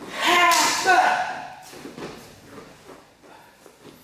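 A man's short, loud vocal exclamation with a sharp breathy edge in the first second, followed by faint scuffs and light taps.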